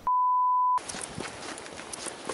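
Colour-bars test tone: a single steady high beep lasting under a second that cuts off abruptly. It gives way to a quiet outdoor background with a few faint clicks.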